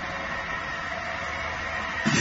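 Pass-through industrial cleaning and drying machine running: a steady hum and hiss with a few held tones in it.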